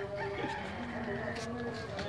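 A rooster crowing: one long drawn-out call lasting most of two seconds, holding nearly level in pitch.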